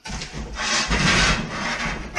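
Plastic wrapping crinkling and rustling, with cardboard rubbing and scraping as a sheet-aluminium panel is slid down into its cardboard box. The rustle runs without a break and grows louder about half a second in.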